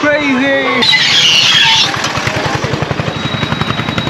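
A small vehicle engine running close by with a rapid, even put-put pulse, heard in busy street traffic; voices are heard in the first second, and there is a short hissing burst about a second in.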